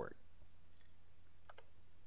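Quiet room tone with a low steady hum, and two faint short clicks, one a little under a second in and one about a second and a half in.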